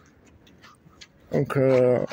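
A man's voice speaks one short phrase near the end, after about a second of quiet with a few faint clicks.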